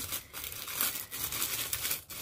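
Packaging crinkling and rustling in the hands, a run of irregular crackles as items are handled and pulled from the box.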